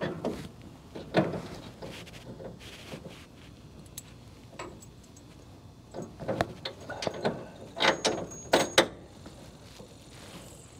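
Metal clunks and scrapes of a steel hydraulic cylinder being worked into its mounting bracket on a truck frame: scattered knocks, with a quick run of them in the last few seconds.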